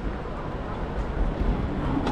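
Steady low rumble and hiss of road-traffic ambience, with no single distinct event.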